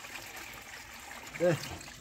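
Liquid pouring from a plastic bucket into the filler opening of a sprayer tank: a steady trickling stream.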